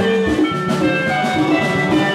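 Live band playing upbeat dance music: bright picked electric-guitar lines over a repeating bass figure and conga drums, with no lead vocal.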